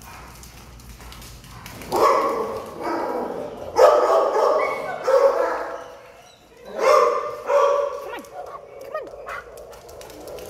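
A dog barking in three loud bouts, about two seconds in, around the middle, and again near the end.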